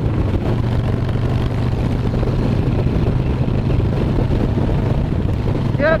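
Harley-Davidson Sportster chopper's V-twin engine and exhaust running steadily at road speed, with wind noise across the microphone.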